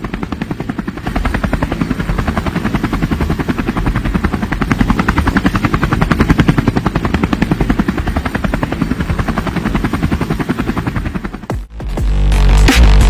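Helicopter rotor blades chopping in a fast, even beat, growing louder toward the middle and cutting off just before the end.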